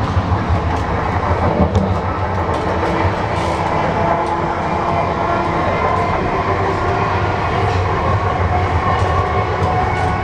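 Interior running noise of a Siemens Desiro Class 350 electric multiple unit in motion: a steady low rumble of the wheels on the track, with a few faint clicks and faint steady tones over it.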